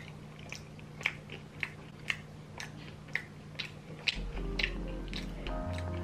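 A person chewing a mouthful of a jailhouse-style 'brick' made from Flamin' Hot Cheetos, with soft crunchy clicks about twice a second, over faint steady background music.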